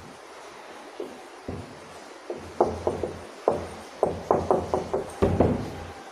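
Whiteboard marker writing on a whiteboard: a run of short taps and strokes, sparse at first, then coming thick and fast in the second half.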